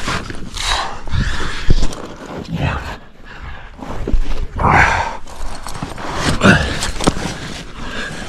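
A climber breathing hard and grunting with effort, a heavy breath about every two seconds, some ending in a low voiced groan.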